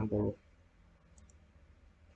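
Two faint, quick clicks of a computer mouse close together about a second in, over a low steady hum, after a short word of speech at the very start.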